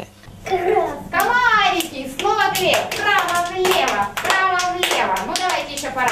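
Young children's voices chanting in rhythm, together with quick, regular hand claps, about three or four a second.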